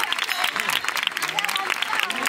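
Crowd applauding steadily, a dense patter of many hands clapping, with people talking among it.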